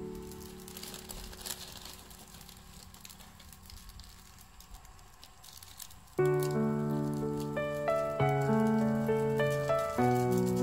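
Water simmering in a pan over a wood fire, with faint crackles, heard in a lull between stretches of background music. The music fades at first and comes back in suddenly and louder about six seconds in, with held notes.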